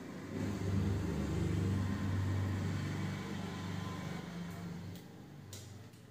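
A low rumble that builds about half a second in, holds for a few seconds and fades away by about five seconds in.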